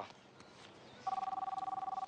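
Mobile phone ringing: a fluttering two-tone electronic trill that starts about halfway through and lasts about a second.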